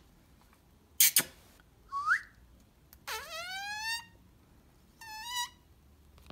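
Male Indian ringneck parakeet whistling: a short rising whistle, then a longer rising whistle about a second long, and a shorter whistle near the end. A sharp double click about a second in.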